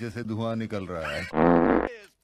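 A low, buzzing sound with a wavering pitch, loudest in a burst starting about 1.3 s in, cut off abruptly just before the end.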